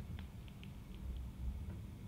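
Quiet room tone: a low steady hum with a few faint, small ticks scattered through it.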